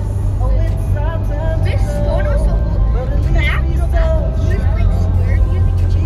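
Steady low rumble of a car driving on a snowy street, heard from inside the cabin, with a person's voice over it.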